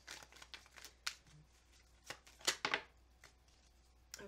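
A deck of tarot cards being shuffled by hand, with several short crisp flurries of cards flicking and slapping together. The loudest comes about two and a half seconds in, and the sound stops about a second before the end.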